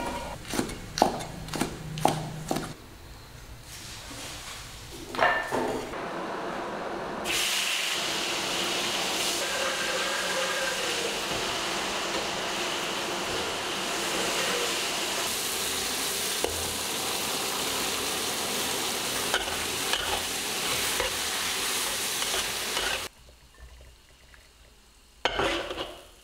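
A cleaver chopping green beans on a wooden chopping board, a run of quick sharp knocks, followed a few seconds later by stir-frying in a wok: a steady loud sizzle with the spatula stirring, lasting about fifteen seconds and cutting off sharply near the end.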